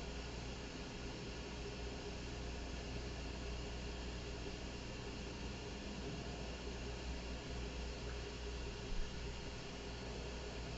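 Steady background hiss with a low electrical hum: room tone, with one faint brief sound about nine seconds in.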